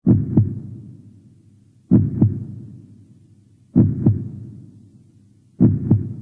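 Heartbeat sound effect: four slow, deep double thumps (lub-dub), about two seconds apart, each fading away before the next.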